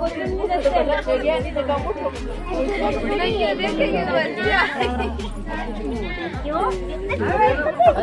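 Many women talking over one another in a lively crowd babble, with music playing underneath.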